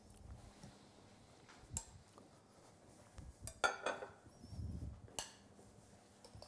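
Kitchenware being handled during plating: a few scattered clinks and knocks of a pan and plates, the loudest just past the middle, with a dull low thump a second later.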